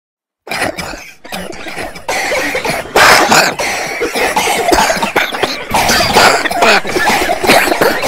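A person coughing hard and repeatedly, starting suddenly out of silence about half a second in.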